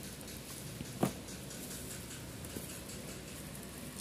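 Faint handling noise of a non-woven fabric dust bag being gripped and lifted out of a cardboard box, with one soft knock about a second in.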